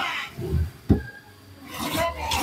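Wooden drawers of a carved teak dressing table being slid open and shut, with a sharp knock just under a second in as a drawer meets the frame.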